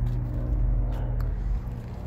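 A steady low mechanical hum under a low rumble that swells in the middle and eases off near the end, the kind of sound made by a nearby motor vehicle.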